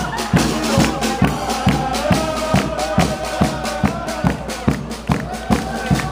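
Brass street band (banda) playing a tune: held horn notes over a steady drum beat of a little over two beats a second, with crowd voices underneath.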